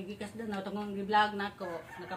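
A rooster crowing in the background, one long drawn-out call, with a voice briefly over it about a second in.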